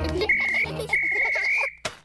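A pea whistle blown twice, a short blast and then a longer one, each a steady high trilling tone.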